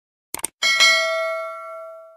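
Sound effect of a subscribe-button notification bell: a quick double mouse click, then a bright bell ding with several tones that rings on and fades away over about a second and a half.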